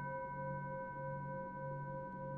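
Singing bowl ringing on after a strike, several steady tones sounding together, with a low tone that wavers in and out about twice a second.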